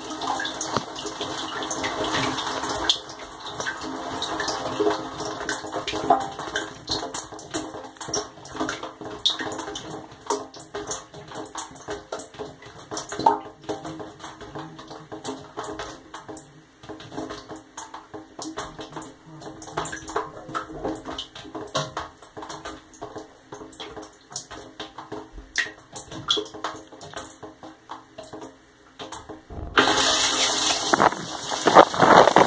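Inside a dishwasher tub with the spray stopped: water dripping and trickling off the stainless-steel walls into the sump, busiest in the first few seconds and thinning out after about halfway. A steady machine hum runs underneath.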